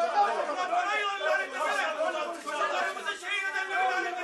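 Only speech: several people talking over one another in a heated argument, with no single voice clear.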